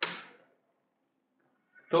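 A short scrape of chalk on a blackboard that fades within half a second, then near silence until a man starts speaking near the end.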